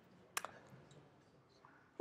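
Near silence with a quick double click from a computer keyboard or mouse button about a third of a second in.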